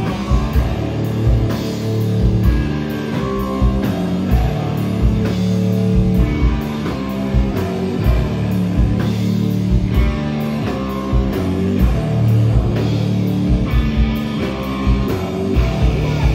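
Rock band playing live through the club PA: two distorted electric guitars, electric bass and a drum kit in an instrumental passage without vocals, driven by a steady drum beat of about two hits a second.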